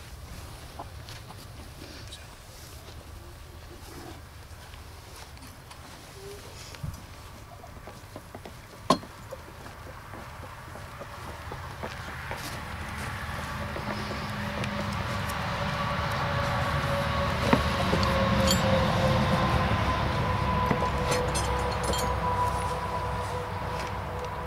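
A passing engine swells over about ten seconds and fades near the end, with a steady whine that slowly falls in pitch. A few sharp metal clinks come from the steel rods and brackets of the wooden grave box being unfastened.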